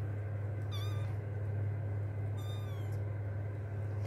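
Persian kitten mewing twice: a short high-pitched wavering cry about a second in, then a second cry that falls in pitch, over a steady low hum.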